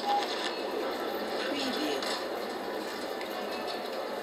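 Indistinct background voices and a steady murmur of noise heard over a phone call line, with no clear words.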